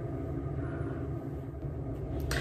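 Steady low background rumble with a faint hiss and no distinct events: room noise.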